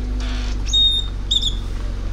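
A bird gives two short, high chirps about half a second apart, over a steady low rumble.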